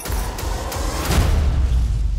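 Dramatic trailer music: a sudden deep hit opens a heavy low rumble that swells louder through the two seconds.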